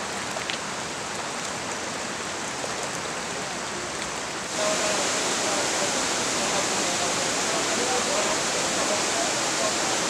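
Steady rush of running floodwater from a muddy runoff stream, growing louder about four and a half seconds in.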